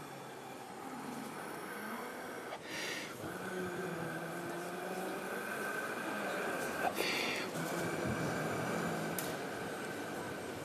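A man's breath blowing a large soap bubble from dish-soap film held in his hands: a quick breath in, then a long, steady, quiet blow, broken by another quick breath about seven seconds in.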